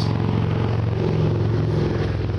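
An engine running steadily in the background, a low even hum with no change in pitch.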